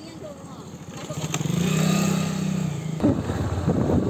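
A motorcycle passes close by, its engine note swelling to a peak about two seconds in and then fading. About three seconds in, a louder, rougher motorcycle engine rumble starts up nearby.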